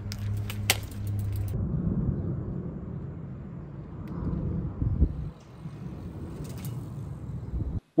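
Wind and road rumble from a bicycle ride, low and uneven. For the first second and a half there is a steady low hum with a few sharp clicks.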